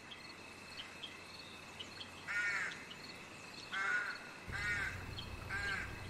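Sound-effect ambience fading up from silence: crows cawing a few times, about once a second, over faint steady insect chirping. A low rumble comes in after about four and a half seconds.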